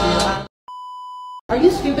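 Intro music cuts off about half a second in, and a single steady electronic beep follows, lasting under a second. Voices with background music start just after it.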